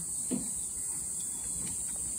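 Steady, high-pitched drone of insects, such as crickets, in a garden lawn, with one short voice sound about a third of a second in.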